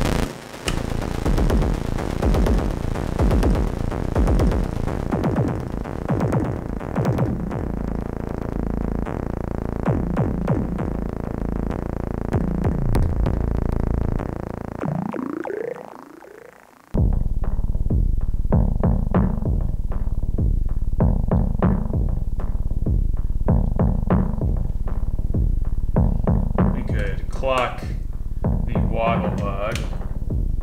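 Make Noise Eurorack modular synthesizer playing a sequenced electronic drum pattern built from MATHS envelopes, heard through a filter's high-pass outputs. Bright, busy hits at first; partway through the sound sweeps down in pitch and fades to a brief gap, then returns as a heavier, bass-weighted repeating pattern with a few high chirps near the end.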